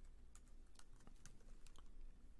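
A handful of faint, scattered keystrokes on a computer keyboard as code is typed.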